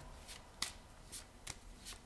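A deck of cards being shuffled by hand, faintly, with a few light snaps of the cards.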